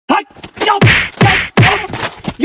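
About four sharp whacks in quick succession, each with a man crying out in pain.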